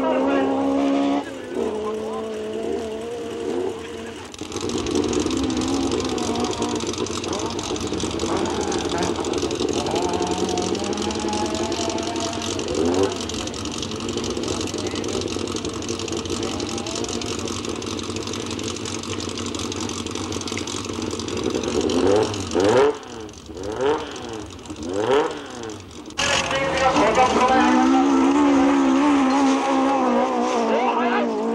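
Modified competition car engines on a dirt-trial course, run hard at high revs. Between about 22 and 26 seconds in, the revs climb and drop sharply several times, then an engine pulls loudly again near the end.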